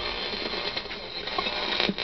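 Static hiss from the speaker of a 1969 GE clock radio tuned between stations, with a single click near the end.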